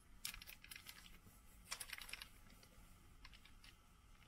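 Faint crinkling and light clicks from a foil pie dish and baking paper being handled as shortcrust pastry is pressed into the dish, in two short clusters (about a quarter second in and around halfway), then a few scattered ticks.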